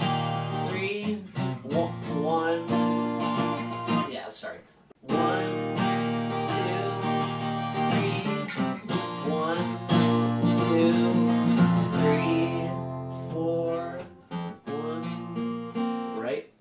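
Acoustic guitar with a capo strummed in chords, stopping briefly between about four and five seconds in before the strumming starts again.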